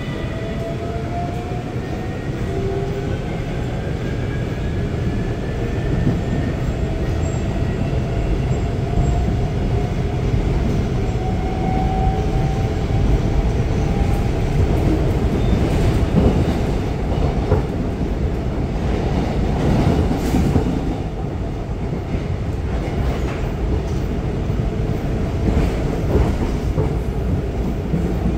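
Seoul Metro Line 4 train with GEC Alstom GTO VVVF traction inverters, heard from inside the passenger car as it accelerates. The inverter and traction-motor whine rises in pitch through the first twelve seconds or so, then gives way to steady running rumble with a few knocks from the track.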